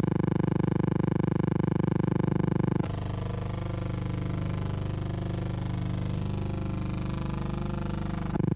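A steady, low buzzing hum at one constant pitch. About three seconds in, it cuts abruptly to a quieter, wavering hum.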